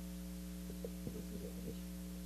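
Steady, faint electrical hum from the room's sound system, with a few faint, indistinct short sounds around the middle.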